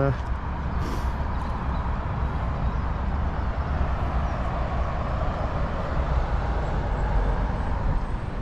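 Steady outdoor background rumble, heaviest in the deep bass, with no voice over it.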